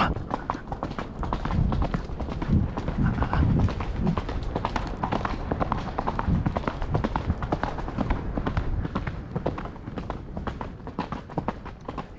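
Hoofbeats of a cob horse going at a brisk pace on a hard dirt path: quick, regular footfalls that keep up all the way through.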